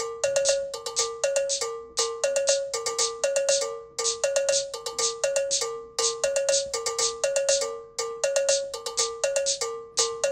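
A looping electronic pattern from a synth keyboard: short, bell-like notes alternating between two close pitches, about four a second, each with a bright ticking top. The phrase repeats about every two seconds.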